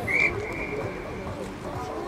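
A referee's whistle blown once at the start, a single high blast about a second long that is strongest at first and then fades, over faint voices on the pitch.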